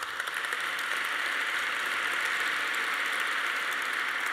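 Audience applause: a steady, dense clapping that starts sharply and holds at an even level.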